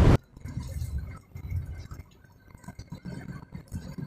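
Cab noise of a truck going slowly downhill on a mountain road: an uneven low engine and road rumble with light clinking rattles. A sharp knock comes right at the start.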